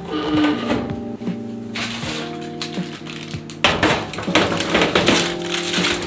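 Soft background music with a steady beat; from about three and a half seconds in, baking paper crinkles and rustles as a paper-lined baking tray is pushed into a countertop oven.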